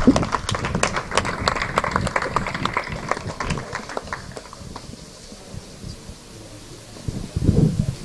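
Small audience applauding, a dense patter of hand claps that thins out and dies away about halfway through.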